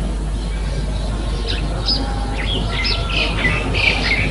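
Birds chirping in short scattered calls, starting about a second and a half in, over a steady low hum and hiss.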